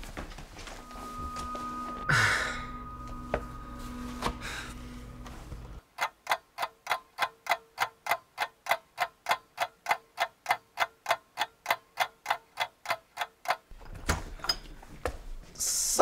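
Clock ticking sound effect: a fast, even run of sharp ticks that starts about six seconds in and stops a couple of seconds before the end, marking a lapse of time. Before it there is only low room noise with one short burst.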